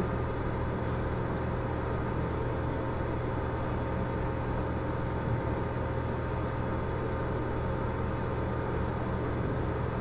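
Steady low hum with an even background hiss, unchanging throughout.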